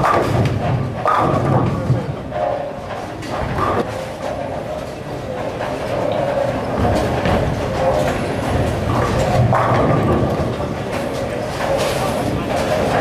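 Bowling alley in play: a bowling ball rolling down the lane and crashing into the pins about two seconds in, among the rumble of balls and clatter of pins from other lanes and a background chatter of voices.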